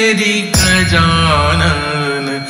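Hindi devotional Ganesh bhajan music: a wavering melodic line over a steady low bass and beat. A new phrase starts about half a second in.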